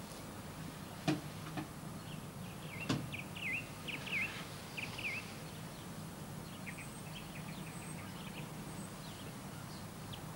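Small birds chirping in short, sliding notes, in a quick cluster a few seconds in and more sparsely later. Two sharp knocks come about one and three seconds in, over a steady low hum.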